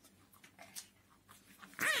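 Faint rustles and creasing of paper as it is folded by hand. Near the end a loud, high, wavering voice cuts in.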